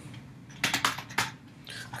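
Keystrokes on a computer keyboard: a quick run of about five sharp key clicks about a second in, typing a word into a search box.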